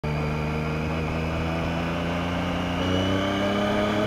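Yamaha FZ-09's three-cylinder engine running under light throttle, its note rising slowly in pitch as the bike gathers speed.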